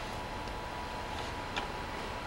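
Room tone: a steady hiss with a faint high steady whine, and one faint click about one and a half seconds in.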